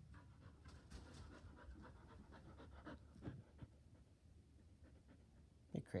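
Border Collie panting faintly in quick, short breaths after running through its play tunnel.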